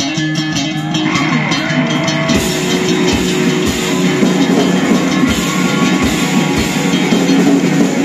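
Live rock band playing an instrumental passage on electric guitars and drum kit. Guitar notes with quick cymbal ticks come first, and the full band with kick drum comes in about two and a half seconds in.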